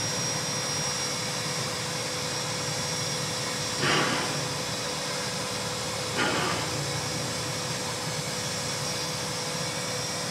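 Standing steam locomotive hissing steadily with a constant whine, broken by two short, louder bursts of steam about four and six seconds in.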